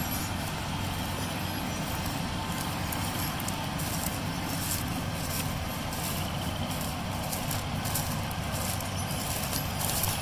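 Heavy farm tractor engine running under load while towing out a stuck seeding outfit: a steady drone with an even low hum, heard from inside the cab.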